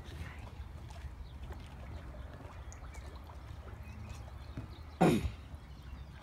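Faint harbour water lapping and trickling under a steady low rumble, with one short, loud sound about five seconds in.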